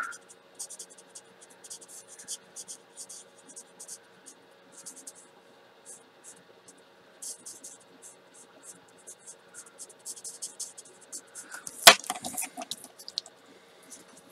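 Spectrum Noir alcohol marker nib scratching across paper in many quick short strokes as a small butterfly is coloured in. A single sharp knock comes near the end.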